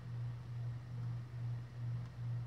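A steady low hum that swells and dips a few times a second.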